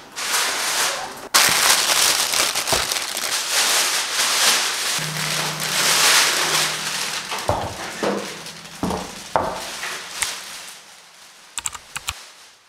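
Plastic packaging wrap crinkling and rustling loudly, close up, as furniture is unwrapped, with a few dull knocks in the second half before it dies down near the end.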